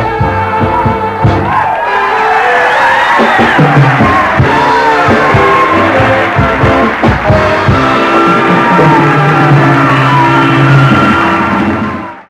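Big band dance orchestra playing, from an old 1960s broadcast recording, swelling louder about two seconds in.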